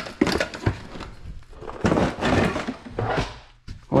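Kitchenware handled in a plastic storage tote: a glass plate and metal pan knocking and clinking against each other and the bin, with rustling and scraping in between.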